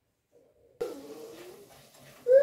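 Near silence, then about a second in a single short, low animal call that dips in pitch and levels off, over a faint background hiss that starts with it.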